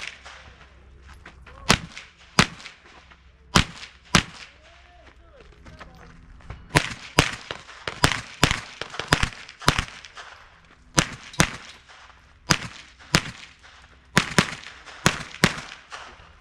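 A string of about two dozen gunshots from a shoulder-fired long gun, in quick pairs and clusters with short pauses between them: a competitor firing through a timed course of fire.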